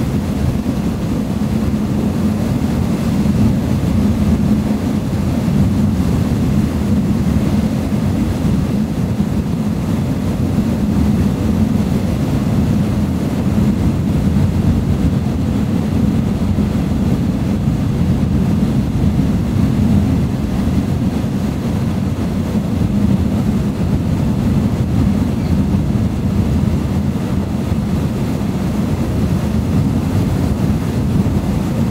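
A passenger boat's engine running steadily as a low drone, with the hiss of water and wind over it.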